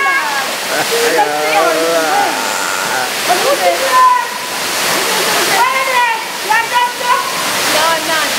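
Steady rush of a waterfall pouring into a rock pool, with several voices calling out and shouting over it.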